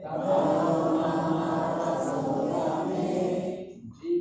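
A group of voices chanting a Sanskrit verse together in unison, the congregation answering the single reciting voice in a call-and-response recitation of the verse. The chanting starts abruptly, is much fuller than the single voice around it, and dies away near the end.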